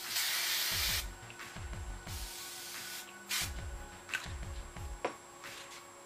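Aerosol hairspray spraying onto hair in hissing bursts: a long one of about a second, a second one a second later, then a short puff.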